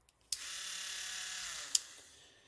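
Small cordless rotary tool with a grinding bit switched on and running at a steady high whine for about a second and a half. A sharp click comes near the end and its pitch falls as it winds down.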